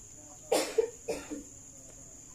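A person coughing twice, two short harsh bursts about half a second apart, over a faint steady high-pitched whine.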